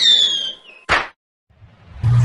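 Sound effects of an animated logo intro: a short whistling tone that falls in pitch, then a single sharp hit about a second in.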